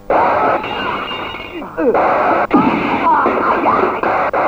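Film fight-scene soundtrack: sharp dubbed punch and hit sound effects, a few at irregular intervals, with men's shouts and grunts.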